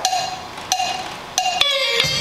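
A count-in of evenly spaced woodblock-like percussion clicks, about one every two-thirds of a second, three in all, then an electric guitar coming in with a note near the end as the song begins.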